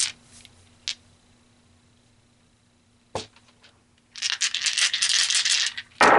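Tarot dice clattering together for about two seconds near the end as they are tossed out onto the table, after a couple of single clicks.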